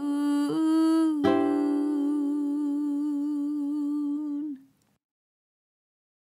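A woman's voice humming the song's last long note with vibrato, over a final ukulele strum about a second in. The music ends sharply shortly before the end.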